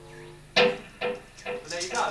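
Guitar struck three times about half a second apart, each note ringing and fading, over a faint held tone, as the instrument is checked at a soundcheck.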